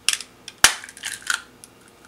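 Zanmini handheld plastic egg cracker squeezed shut on an egg, its metal blades breaking the shell: small clicks, one sharp crack about two-thirds of a second in, then a quick cluster of crunchy clicks as the shell is pulled apart.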